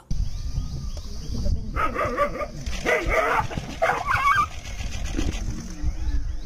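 A dog barking, then yelping in short high cries as a tiger seizes it, over a steady low rumble.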